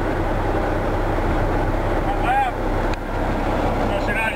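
Semi-truck diesel engine running at low speed, a steady low drone heard from inside the cab. A brief voice sound breaks in about two seconds in.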